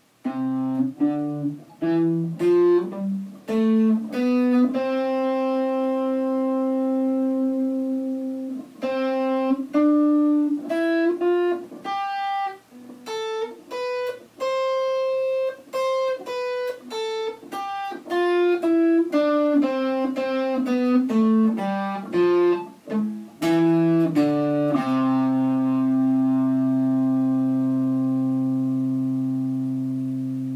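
Electric guitar freshly strung with Elixir Nanoweb 11–49 strings, played with a clean tone as a slow line of single notes, some held and left ringing. Near the end a last low note rings on and slowly fades.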